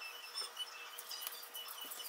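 Food sizzling faintly on an electric griddle, with many small crackles, and a few light clicks of metal tongs turning it.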